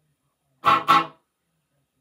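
Electric guitar through a Fender Mustang I amp, two quick chord strums about a third of a second apart, cut off short. They are played with the Faux Spring Reverb pedal's blend set fully dry, so no reverb tail follows.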